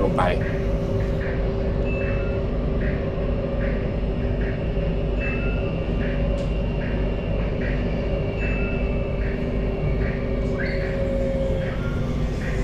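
Inside a Bangkok MRT Blue Line metro car running on elevated track: a steady rumble with several constant hum tones from the train's drive. Short high notes repeat a little under twice a second. Near the end the top hum dips slightly in pitch as the train begins to slow for the next station.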